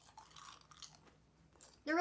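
Potato chips being chewed with a run of faint, crisp crunches, then a voice begins near the end.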